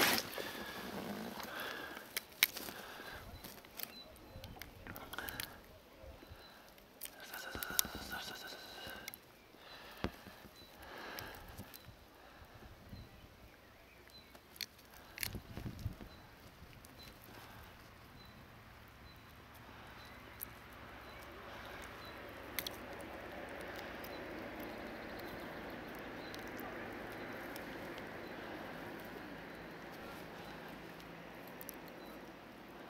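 Scattered light clicks and rustles of hands handling fishing line and tackle in the angler's lap, thinning out after about fifteen seconds into a faint steady hiss.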